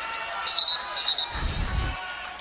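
Basketball sneakers squeaking briefly on a hardwood court, then a low thud in the second half, over the steady murmur of an arena crowd.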